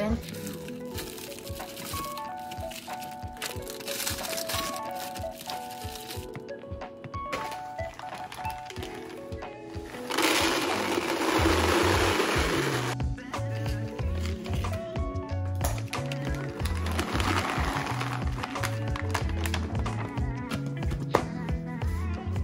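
Background music with a stepped melody. About ten seconds in, chocolate chips pour into a plastic cereal container for about three seconds, a loud rattling rush, with a softer stretch of pouring a few seconds later.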